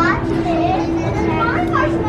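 Young children chattering and playing, their voices high and overlapping, over a steady low hum that holds one pitch throughout.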